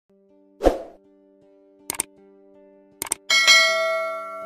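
Sound effects for a subscribe-button animation: a soft pop about half a second in, quick double clicks just before two seconds and just after three seconds, then a bright bell chime about three seconds in that rings on and slowly fades.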